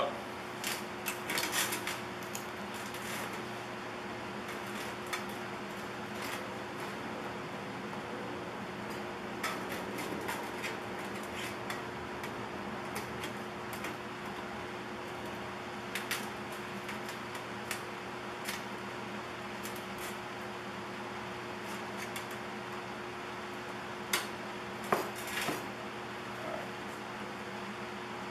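Light metallic taps and clinks of a small hammer on a thin tin coffee can, in scattered clusters, over a steady background hum.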